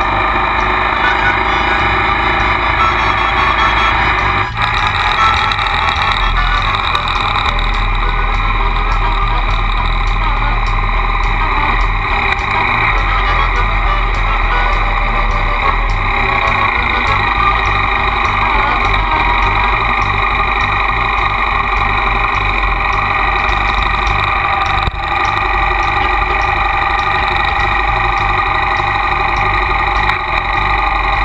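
Triumph motorcycle engine running steadily at road speed, heard from the bike with wind noise over it. The sound dips briefly twice, about four and a half seconds in and again about twenty-five seconds in.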